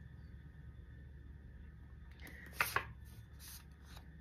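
A paper note or card being handled: two quick, sharp papery flicks about two and a half seconds in, over a low steady room hum.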